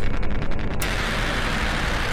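Deathstep electronic music: a rapid stuttering pulse cuts off under a second in, giving way to a steady wash of white noise over a low bass.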